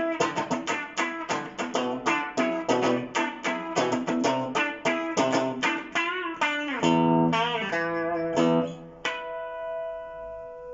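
Epiphone Les Paul Prophecy electric guitar with Fishman Fluence pickups, played through an amplifier. It plays a quick run of picked notes, bends a few notes about six seconds in, then holds chords, the last one ringing out near the end.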